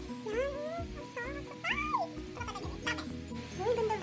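Background music with a cat meowing over it several times, each call a short cry that rises and falls in pitch.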